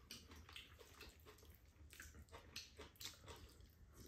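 Faint chewing and mouth sounds of people eating bibimbap, with irregular short clicks and smacks.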